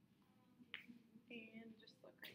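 A single sharp finger snap about a second in, in an otherwise near-silent small room, followed by a brief faint voice.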